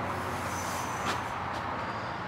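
Steady low background hum with an even hiss and no distinct event, with a faint tick about a second in.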